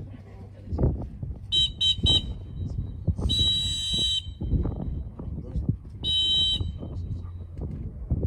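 A retriever-training whistle blown by the handler: three short toots, then a long blast, then a shorter single blast, commands to a dog running a land blind. Wind rumbles on the microphone underneath.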